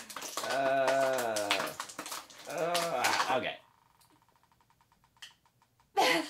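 Thin clear plastic toy packaging crinkling and crackling in quick clicks as fingers pick it open, under a person's drawn-out, wordless voice sounds. About two thirds of the way in, it drops to near silence.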